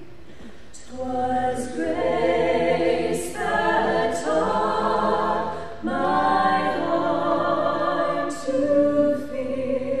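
Three women's voices singing a song together a cappella, in sustained phrases with short breaks between them, the first phrase starting just under a second in.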